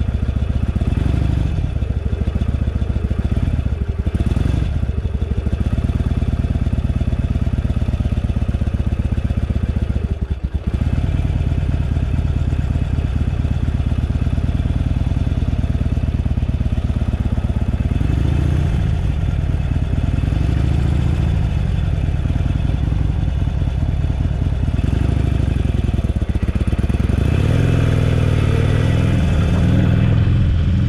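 Harley-Davidson Sportster Iron 883's air-cooled V-twin engine running on the move, its revs rising and falling several times, with a brief dip about ten seconds in and a climb in revs near the end.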